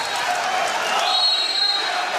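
Steady crowd noise in an indoor pool arena, with a long, steady, high referee's whistle blast starting about a second in, signalling an exclusion foul.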